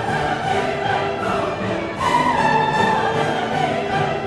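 Orchestral classical music; about halfway through, a long held high melody note enters and sags slightly in pitch.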